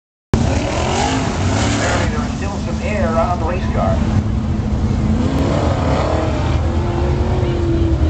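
Several sprint car V8 engines running as the cars circle the dirt oval before the start, their pitch rising and falling as they pass, with a steady deep rumble underneath. A public-address announcer's voice is heard over the engines.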